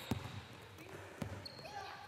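A basketball bouncing twice on a hardwood gym floor, about a second apart, faint under the gym's room tone.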